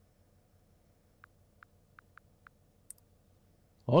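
A few faint computer clicks: about five soft ticks spread over a second and a half, then one sharper click, as a dropped call is being reconnected.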